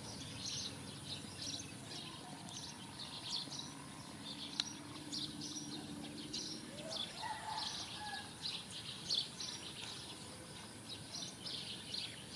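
Small birds chirping repeatedly in short, irregular notes over a faint low background hum.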